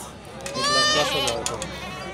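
A goat bleats once, a single steady call lasting just under a second, starting about half a second in.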